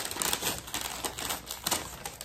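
Subscription-box packaging being handled as it is opened and unpacked: a quick, irregular run of small clicks and rustles.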